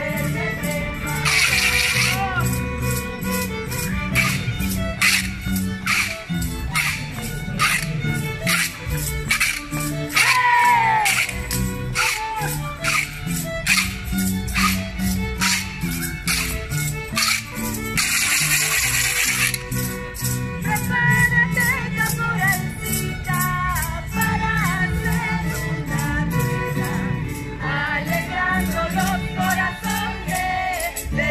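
Live Andean folk dance music on harp and violin, with sharp percussive strokes keeping a steady beat about twice a second. Two short hissing bursts stand out, about two seconds in and again near eighteen seconds.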